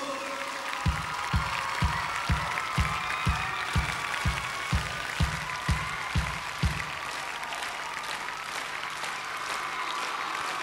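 Audience applauding in a large concert hall as the song ends, over a steady low beat of thumps about twice a second that stops about seven seconds in.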